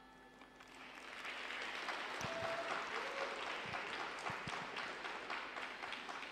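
Audience applause for a figure skater's finish, swelling up about a second in and holding, with a few sharper single claps standing out.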